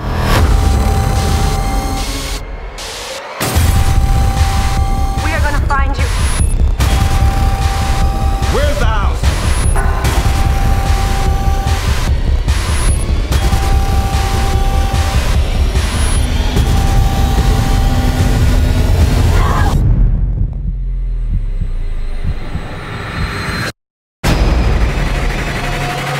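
Film-trailer score: a steady low pulse under a held tone that keeps coming back for about a second and a half at a time, with short sweeps at the cuts. About twenty seconds in the pulse drops away, leaving a softer low drone.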